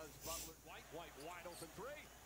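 Basketball game broadcast playing quietly: a commentator talking, with a basketball bouncing on the court and a brief high-pitched sound near the start.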